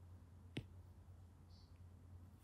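Near silence: a low steady hum with one faint, short click about half a second in.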